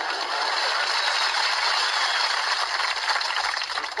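Audience applauding steadily at the end of a musical number.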